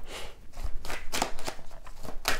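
A deck of fortune-telling cards being handled and shuffled in the hand to draw new cards: papery rustling with several crisp card snaps.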